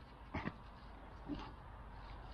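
Two short, faint pained grunts from an injured man, about half a second and a second and a half in.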